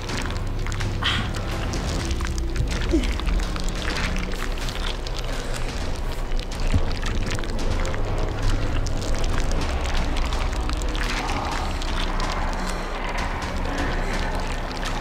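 Low, steady droning horror-film score, with a woman's pained sobs and groans over it.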